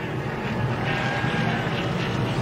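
NASCAR Truck Series V8 race-truck engines running in a steady drone.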